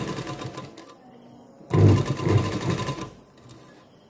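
Domestic straight-stitch sewing machine stitching folded fabric in two short runs: one tails off within the first second, and another starts just before two seconds in and runs for about a second and a half, the rapid strokes of the needle even and close together.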